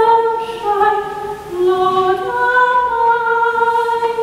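A woman singing a slow melody in long held notes, stepping from one pitch to the next.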